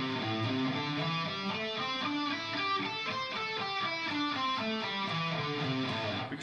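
Electric guitar playing the A minor pentatonic scale in its first-position box shape, two notes on each string: an even run of single notes climbing and descending the pattern.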